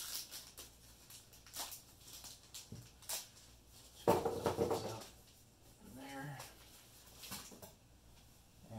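Handling noises while unpacking a scooter: a few light clicks and rustles, then a louder rubbing scrape of the polystyrene foam packing block about four seconds in, lasting nearly a second.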